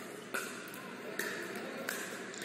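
Pickleball rally: three sharp pops of paddle and plastic ball, roughly a second apart, over the steady background noise of an indoor court hall.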